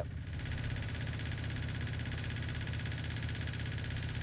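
Paint-spraying equipment running steadily: a motor hum with a fine rapid pulsing, under a high hiss that drops out briefly twice, as with a spray gun being released between passes.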